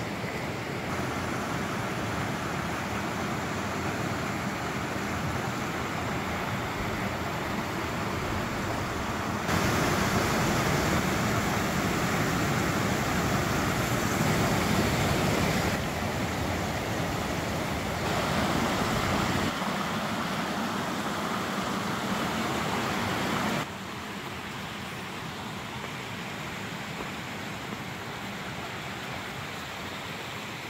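Steady rushing of a mountain creek tumbling over small waterfalls and rocks. The level jumps abruptly up or down several times, louder around the middle and quieter for the last few seconds.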